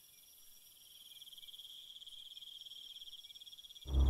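Faint night ambience of crickets chirping in a fast, even pulsing trill. It almost drops out at the start and comes back about a second in.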